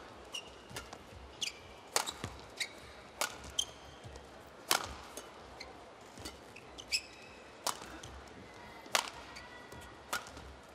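Badminton rally: sharp racket strikes on a feather shuttlecock, irregularly spaced about a second apart, with short squeaks of court shoes on the mat between them.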